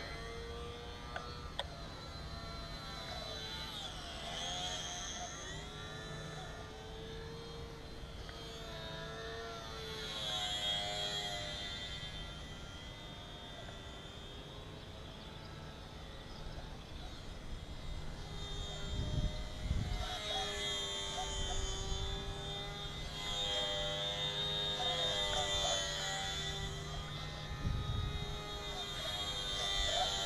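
Small electric RC plane's motor and propeller whining in flight, the pitch wavering and the sound swelling and fading as the plane passes nearer and farther. Wind buffets the microphone a few times in the second half.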